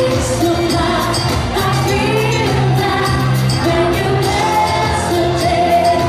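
Live pop singing: a singer's amplified voice carrying a melody over a backing track with a steady dance beat.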